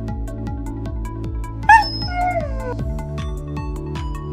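Background music with a steady beat, and about a second and a half in a single dog whine, the loudest sound, that jumps up and then falls in pitch over about a second.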